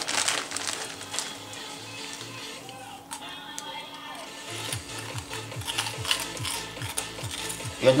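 Cheetos corn puffs being crunched and chewed, with the foil snack bag crinkling near the start, over quiet background music.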